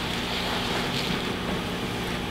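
Steady room tone: an even hiss with a low hum underneath, and no speech.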